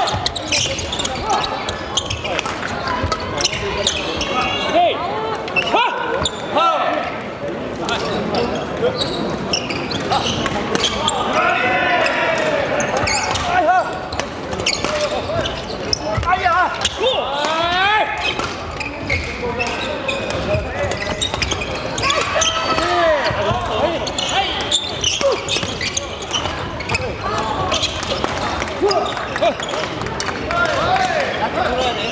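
Badminton played across several courts in a large, echoing sports hall: many sharp racket strikes on shuttlecocks, mixed with players' and spectators' voices and calls.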